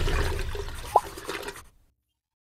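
Watery rushing sound effect from an animated intro, fading out over about a second and a half, with a short rising blip about a second in, then silence.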